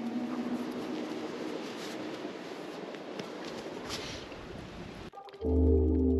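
A steady outdoor hiss with faint music beneath it, then, about five seconds in, a sudden switch to louder background music of held chords over deep bass.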